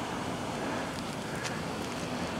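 Steady outdoor background noise, an even hiss like wind on the microphone, with a few faint ticks.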